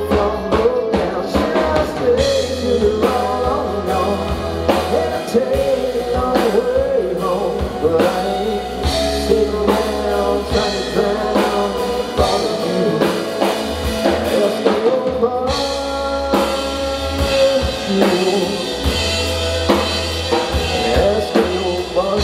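Live country-rock band playing an instrumental break: drum kit, electric bass and guitars, with no lead vocal.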